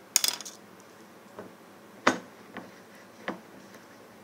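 Kitchen clatter of glass and cookware: a quick rattle of clinks just after the start, then a few separate sharp knocks and clicks, the loudest about two seconds in.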